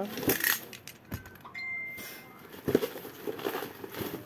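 Handling noise of a boxed product: several sharp clicks and knocks, with a brief steady high tone about a second and a half in.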